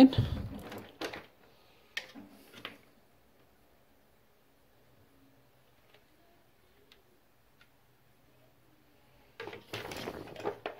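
A few short clicks and knocks of handling as a mains power plug is pulled out, followed by a long stretch of near quiet with a few faint ticks. Louder handling noise starts just before the end.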